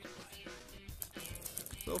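Light crinkling and small clicks from the clear plastic wrapper of a baseball card rack pack being handled, over faint background music.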